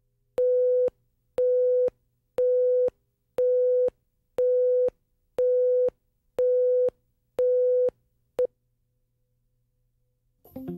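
Countdown-leader beeps: eight identical half-second tones, one a second, then a single short blip a second after the last, counting down to the start of the program.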